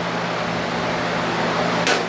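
Steady low hum of a running machine, with one sharp click near the end.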